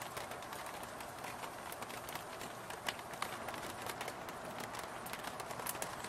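Rain falling steadily, with scattered drops tapping sharply close by.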